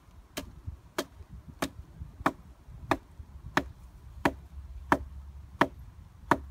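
A wooden peg being hammered into the ground: nine sharp, evenly spaced blows, about three every two seconds.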